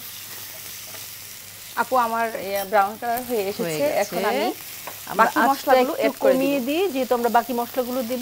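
Sliced onions frying in mustard oil in a nonstick pan, sizzling as a wooden spatula stirs them. From about two seconds in, louder pitched sounds that rise and fall, in short stretches, lie over the sizzle.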